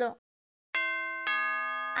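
Two-note doorbell chime, a ding-dong. The first note sounds just under a second in and the second about half a second later, both ringing on: visitors arriving at the door.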